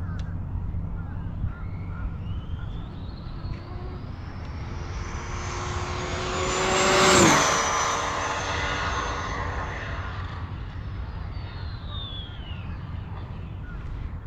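Arrma Limitless 8S RC speed-run car passing at about 117 mph. Its high-pitched drivetrain whine climbs in pitch and loudness as it closes in and peaks with a rush of noise about halfway through. The whine then drops sharply in pitch as the car goes by and fades away.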